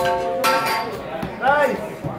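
Voices echoing in a large gym hall: a held, steady note in the first half second, then a short shout that rises and falls about a second and a half in.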